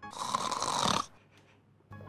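A single snore lasting about a second.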